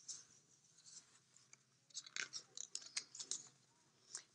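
Faint paper rustles and quick ticks as a picture book's pages are handled and turned, in a short cluster in the second half.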